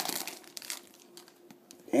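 Foil wrapper of a trading-card pack crinkling as it is pulled open, dying away about half a second in, followed by a few faint clicks.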